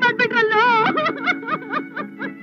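A woman sobbing and wailing in quick, broken cries, her voice wavering in pitch, over a steady background music drone.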